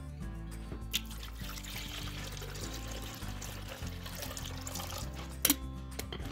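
Background music with held notes over water being poured into a Mr. Coffee drip coffee maker. There is a sharp click about a second in and another near the end.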